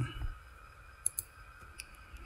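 A few light clicks from a computer mouse: two quick ones about a second in and another near the end.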